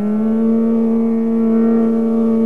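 Male Hindustani classical singer holding one long, steady note in Raag Kedar.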